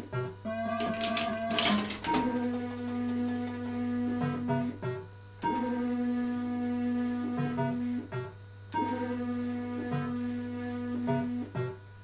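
Electrocoin Big 7 fruit machine spinning its reels game after game: a steady electronic tone plays during each spin. It breaks off with a few quick clicks as the reels stop one after another, then starts again with the next spin.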